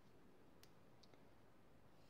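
Near silence with a few faint clicks of knitting needles as stitches are worked.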